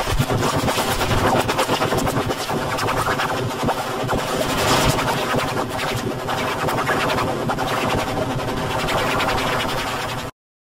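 Logo intro audio heavily distorted and layered by stacked effects into a dense, harsh, continuous wash, with music buried in the noise.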